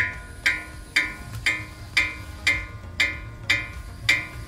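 Background music: plucked-string notes struck in a steady rhythm about twice a second.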